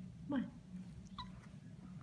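A domestic cat makes one short, chirp-like meow about a second in, over a steady low hum.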